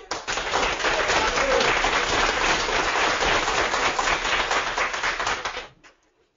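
Audience applauding, a dense steady clatter of many hands that dies away shortly before the end.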